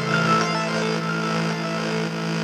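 Instrumental backing music of a pop song holding a steady sustained chord, with no voice.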